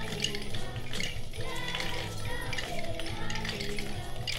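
Music from a children's school choir performance: a held accompaniment with pitched voices over it, and hand-held percussion rattling and jingling in quick short strokes throughout.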